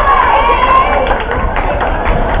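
Basketball game in a gym: crowd and player voices, with players' sneakers hitting the hardwood floor as they run down the court.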